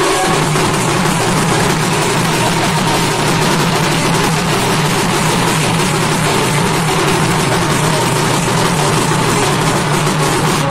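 Sambalpuri folk band playing an instrumental devotional tune. Several dhol barrel drums are beaten with hand and stick in a dense, unbroken rhythm.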